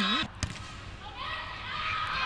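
A single sharp smack of a hand striking a volleyball, about half a second in, followed by a steady low arena background.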